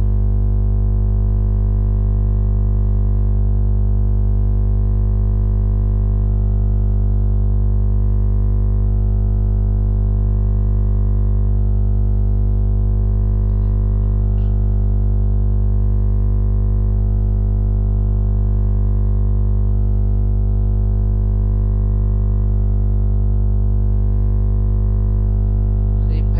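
Loud, steady electrical hum with a buzzy edge, unchanging throughout: a fault in the recording that gives it its bad audio quality.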